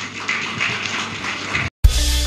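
Audience applauding, a dense patter of clapping that cuts off abruptly about 1.7 s in. Upbeat outro music with guitar and drums starts just before the end.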